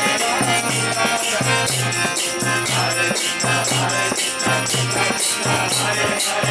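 Devotional kirtan music: a portable harmonium plays sustained notes while small hand cymbals (karatalas) jangle in a steady beat of about two strokes a second.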